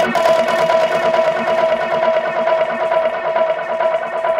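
Psy tribal electronic dance music: a high synth note held steadily over a fast, even pulse, with little bass underneath.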